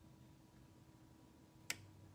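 A single short, sharp click near the end, over quiet room tone with a faint steady hum.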